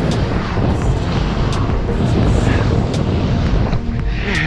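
Wind buffeting an action camera's microphone while skiing fast through deep powder: a loud, steady rumble with the hiss of skis in the snow and a few brief clicks.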